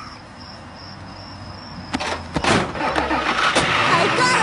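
A car engine sound effect that comes in about two seconds in and grows louder, over a low rumble.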